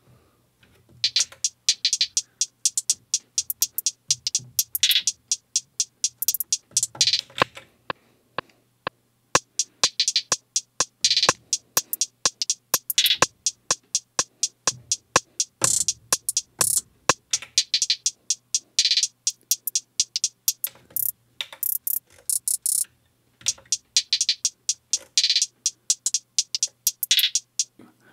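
Hi-hat samples played on an Akai MPC One drum machine: a looping hi-hat pattern with fast note-repeat rolls, the hits bunching into rapid bursts. The rolls use hi-hat copies tuned up and down. A faint steady low hum runs underneath.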